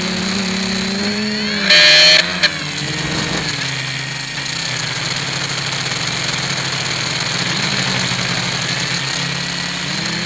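Quadcopter's electric motors and propellers whining as heard from its onboard camera, several pitches sliding up and down as the throttle changes through the turns; the propellers are not yet balanced. A brief, very loud burst of noise cuts in about two seconds in, with a click just after.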